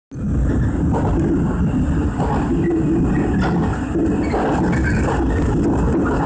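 Steady, mostly low rumble of a moving train's running noise, heard from inside the passenger car.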